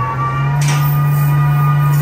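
Bausch + Lomb Stellaris Elite phacoemulsification machine sounding its steady electronic hum during aspiration, with several steady higher tones above it. The hum steps up in pitch shortly after the start, signalling that vacuum is being increased for segment removal.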